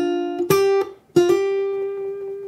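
Martin J-40 steel-string acoustic guitar in open G tuning playing a short blues lick of single notes high on the neck, fretted with a hammer-on. The last note, struck about a second in, is left ringing.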